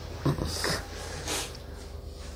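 Light laughter: a few short breathy chuckles and exhalations, over a steady low hum.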